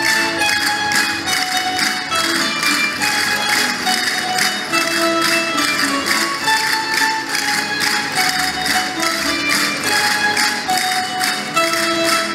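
Traditional Spanish folk dance music: plucked string instruments carry the melody over a quick, even percussion beat.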